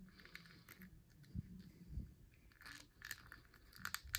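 Faint handling sounds of a plastic action figure: soft rubbing and a few scattered small clicks as a head is pushed down onto its neck ball joint.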